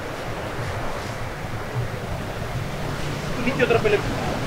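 Sea surf washing on the rocks at the foot of the cliff, a steady rushing noise, with wind on the microphone. A person's voice comes in near the end.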